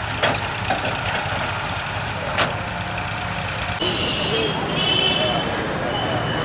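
Steady outdoor background noise of running engines with voices mixed in, broken by two sharp clicks; about four seconds in the sound changes and high thin whistling tones come in.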